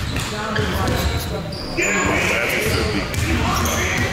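Basketballs bouncing on a gym floor amid indistinct voices and chatter, in a large gym.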